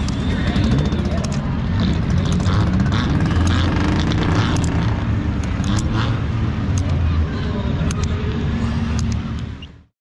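A vehicle engine idling steadily under indistinct voices, with scattered sharp clicks and knocks; the sound fades out near the end.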